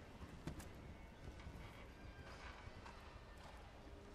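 Faint hoofbeats of a horse cantering on sand arena footing, with a sharp knock about half a second in.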